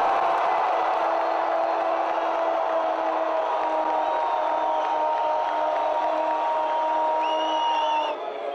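Stadium crowd cheering a goal: a loud, steady roar with several long held tones over it.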